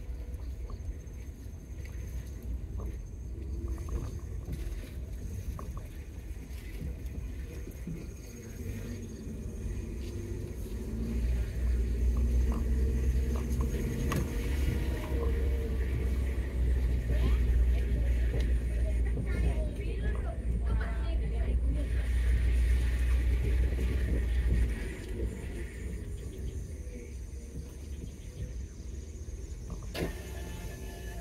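Heard from inside a small car driving slowly: a steady low rumble of engine and tyres. It grows clearly louder about a third of the way in and drops back a few seconds before the end.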